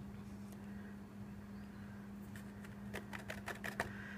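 A steady low hum, then in the last second and a half a run of light clicks and ticks from a small plastic jar of embossing powder and cardstock being handled on a craft table.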